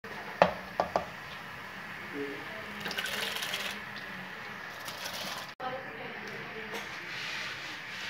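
Water boiling in an aluminium cooking pot, with three sharp knocks in the first second as cardamom is added, then a rushing splash about three seconds in as soaked rice is poured into the boiling water.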